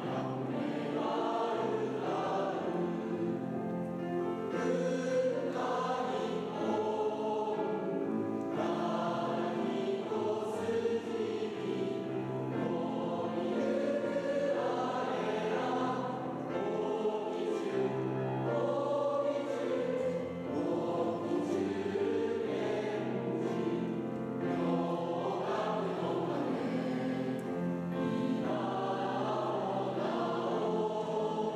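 A choir singing in several voices, with long held notes that change every second or two.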